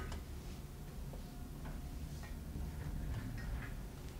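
Faint, scattered taps and clicks from a lecturer moving about at a whiteboard, over the steady low hum of a lecture hall.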